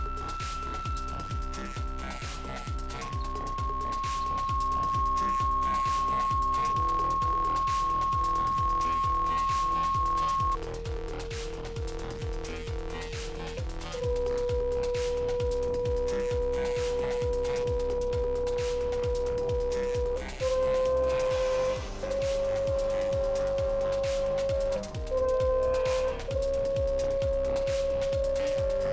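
Steady sine tones from a tone generator driving a speaker-mounted Chladni plate, stepping through frequencies. The tone holds near 1330 Hz for the first few seconds, drops to about 1050 Hz, then moves in short steps between about 450 and 550 Hz, with brief breaks at each change. Background electronic music with a steady beat plays underneath.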